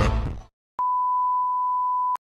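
Music fades out, and after a brief silence a steady 1 kHz test tone comes in about a second in. It is the single-pitch beep that goes with colour bars.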